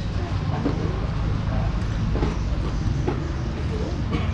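Steady outdoor background noise: a low rumble under an even hiss, with faint voices in the background.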